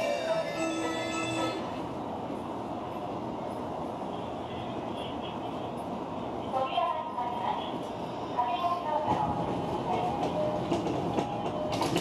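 Station ambience heard from a train standing at the platform: a steady even hum, with a melody-like chime that ends about a second and a half in and a muffled platform announcement in the second half.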